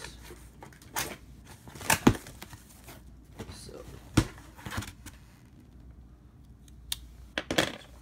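Packing tape on a cardboard shipping box being slit with a knife and the box's cardboard flaps pulled open. It comes as a series of short rips and knocks, loudest about two seconds in, with another cluster near the end.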